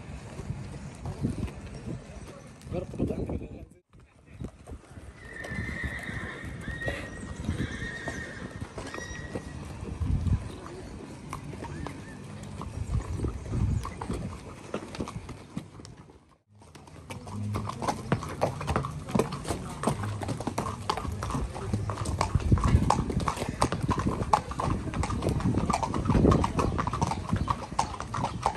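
Hooves of several horses walking, clip-clopping unevenly, with the sound breaking off briefly twice.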